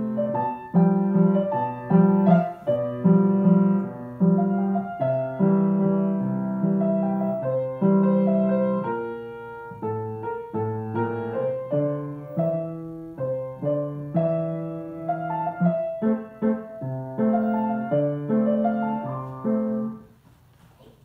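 Acoustic grand piano being played: a slow piece of held chords and melody notes, cutting off at the very end.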